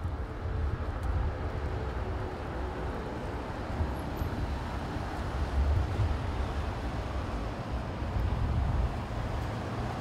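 Motorcade of cars and SUVs driving past on a street: a steady low rumble of engines and tyres that swells and fades as the vehicles go by.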